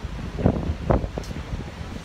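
Wind buffeting a handheld phone's microphone over street noise, with two sudden bumps about half a second and a second in.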